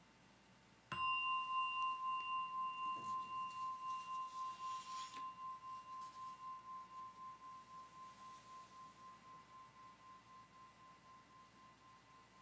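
A bell struck once about a second in, ringing with one clear tone that wavers in loudness about three times a second and slowly fades.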